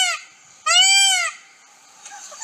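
Peacock calling twice: the end of one loud call about a fifth of a second in, then a second full call of about half a second starting near two-thirds of a second in, each rising and then falling in pitch.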